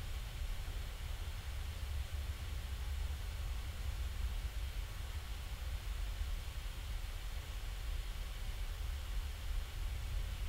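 Steady low rumble with a faint even hiss: background room noise picked up by the microphone, with no distinct sounds in it.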